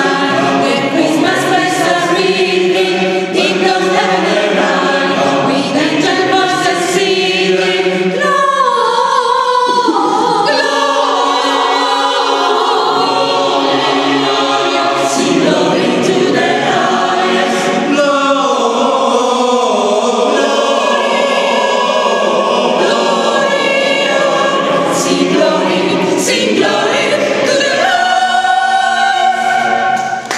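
Mixed choir of men and women singing a Christmas carol in several-part harmony, with sustained and gliding notes and no break.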